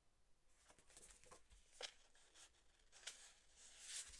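Faint rustling and sliding of sheets of 6x6 patterned paper being handled and shuffled, with a few brief soft flicks of paper edges.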